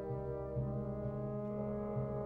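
Wind ensemble playing slow, held brass chords, with a new low note entering about half a second in.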